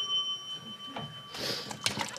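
A single bell-like ding rings on with a clear, high tone that slowly fades and stops near the end, followed by a short rustle and a click.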